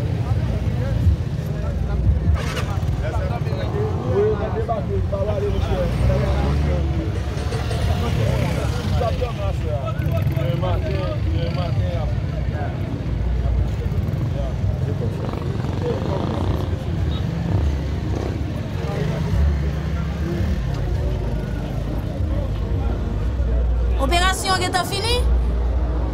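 Steady low rumble of a vehicle engine running, with indistinct voices of several people talking. Near the end comes a brief high, warbling sound.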